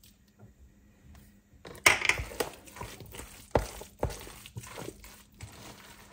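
Quiet for nearly two seconds, then imitation crab salad being stirred with a spatula in a plastic tub: wet mixing with irregular knocks and scrapes of the utensil against the plastic. The sharpest knock comes about two seconds in.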